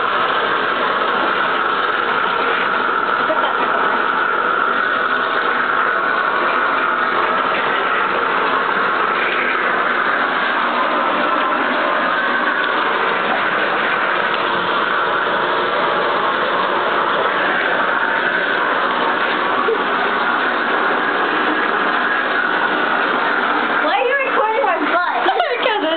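Water running steadily from a bathtub faucet as hair is rinsed under it.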